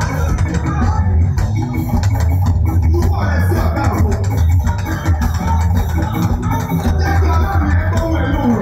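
Loud live gospel praise music from a band with keyboard, drums and a steady heavy bass, with singers on microphones over it.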